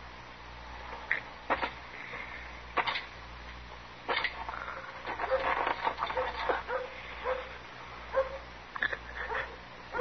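Radio-drama sound effects: three sharp knocks a little over a second apart, then a wounded man groaning and gasping in fits and starts.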